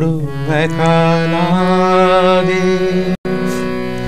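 A man singing to harmonium accompaniment. His voice glides and wavers over the harmonium's steady held chord. The sound cuts out completely for a split second about three seconds in.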